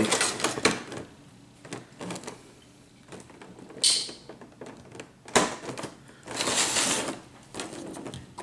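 Clear rigid plastic packaging being handled and shifted, giving irregular crinkles, clicks and knocks, with a longer crackling rustle about six seconds in.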